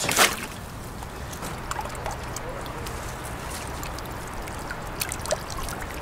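A wire crayfish trap being lifted out of a pond: a brief splash as it comes clear of the water, then water trickling and dripping from the mesh, with occasional light clicks.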